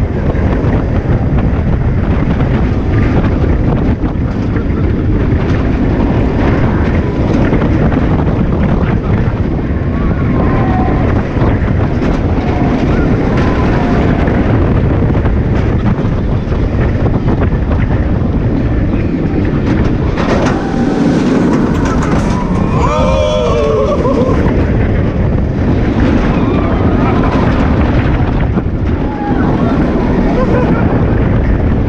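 Loud, steady wind buffeting the microphone together with the running noise of a Bolliger & Mabillard floorless roller coaster train on its track. Riders' screams rise and fall over it, most clearly about two-thirds of the way in.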